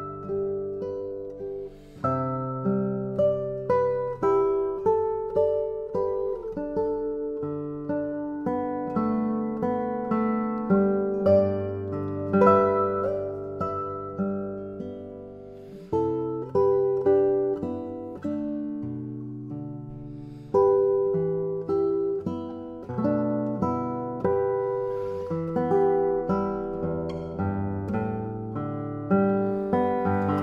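Solo classical guitar, fingerpicked: a melody of plucked notes over bass notes, each note ringing on and fading before the next.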